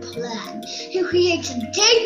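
A child singing over a recorded instrumental backing track with steady bass notes.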